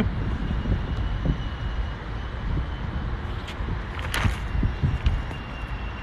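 Steady low rumble of urban outdoor background noise, with a few faint clicks about three and four seconds in.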